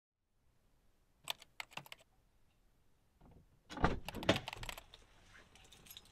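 Handling noises in a car cabin: a few sharp clicks, then about four seconds in a thump and a second of clattering and rattling.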